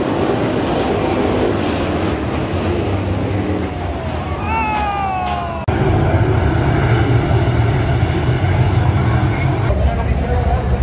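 Dirt-track late model race cars running on the track, recorded from the grandstand, with crowd noise and a single falling cry from a spectator about four seconds in. About six seconds in the sound cuts suddenly to a lower, steady rumble.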